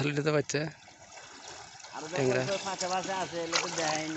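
A man's voice speaking, broken by a pause from about one to two seconds in, under which faint water trickles and sloshes around a man wading through a shallow river.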